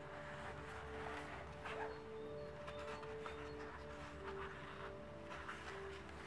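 Faint background music of soft held notes that change pitch now and then, with light rustling of sketchbook paper as pages are handled and turned.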